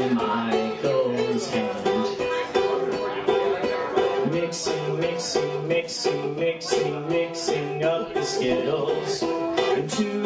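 Ukulele-led song in an instrumental passage between sung lines: plucked-string chords changing under a steady pulse, with a regular bright stroke on the beat coming in about halfway through.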